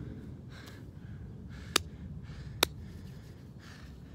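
A man breathing hard between push-ups, a few soft breaths. Two sharp clicks about a second apart come near the middle, over a steady low rumble.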